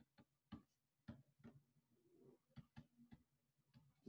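Near silence with faint, irregular clicks: a stylus tapping and scratching on a drawing tablet during handwriting.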